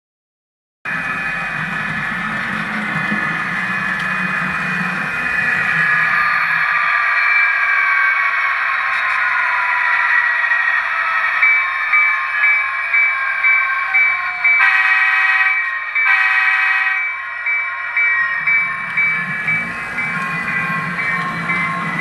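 Athearn F59PHI model locomotive running under an economy SoundTraxx sound decoder: simulated diesel prime mover sound from its small onboard speaker, almost drowning out the motor and gear drivetrain noise. The sound starts about a second in; about halfway through the bell starts ringing in an even rhythm, two horn blasts sound, and the bell keeps ringing to the end.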